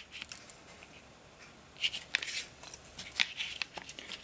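Handling noises from a Kydex knife sheath and its nylon webbing belt loop being turned over in the hands: scattered soft rustles and small plastic clicks, bunched around the middle and again near the end.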